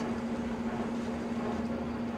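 Steady engine drone: one constant low hum over a noisy rumble, as from a machine idling.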